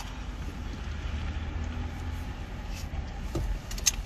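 Steady low rumble inside a car cabin, the engine and road noise of the car as it drives, with a couple of faint clicks near the end.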